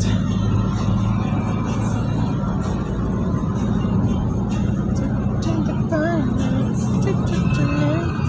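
Steady engine and road noise heard from inside a moving car's cabin, with a brief wavering pitched voice or tune about three-quarters of the way through.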